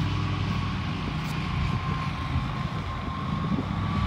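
Ferris zero-turn mower's engine running steadily as it mows, a low even hum with a faint steady whine above it.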